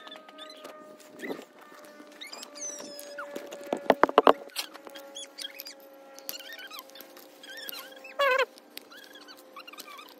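Squeaks and sharp clicks of a metal pick prying the old rubber O-ring off a plastic oil filter cap, with a cluster of loud clicks about four seconds in and a short squeal just after eight seconds.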